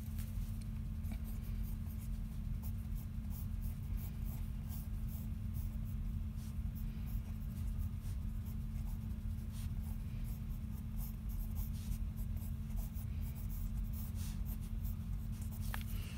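Pencil scratching on sketchbook paper in many quick, short strokes as a scene is sketched, over a steady low hum.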